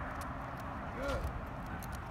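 A man says "good" once, about a second in, over steady outdoor background noise with a low rumble and a few faint clicks.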